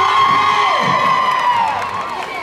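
Crowd of marchers shouting together in one long held cry that falls away near the end.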